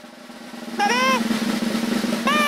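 Rapid rattling clatter of plastic Power Pux pucks in the toy arena game, building up over the first second over a steady low hum. A brief high exclamation comes about a second in.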